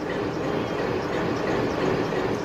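Steady, even running noise of a train, with no clear rhythm or distinct clicks.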